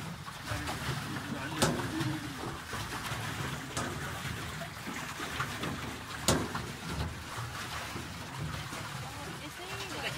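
Water swishing and lapping against the hull of a small boat moving across a lake, with two sharp knocks, one about one and a half seconds in and one about six seconds in.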